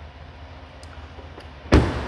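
Driver's door of a 2019 Cadillac Escalade slammed shut once, near the end, over a steady low hum.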